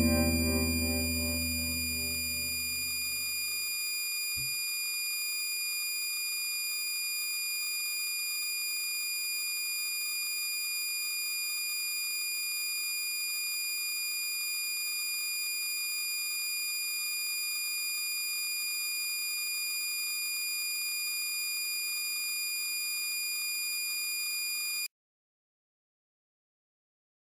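Electronic drone of several steady high-pitched sine tones held at a constant level. A low distorted chord dies away under it in the first few seconds, and the tones cut off abruptly near the end.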